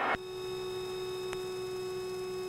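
A steady electrical hum made of a few held tones, the lowest one strongest, with a faint tick about halfway through.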